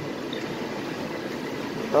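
Steady gym background noise: an even hum and whir from ventilation and exercise machines, with no distinct knocks or rhythm.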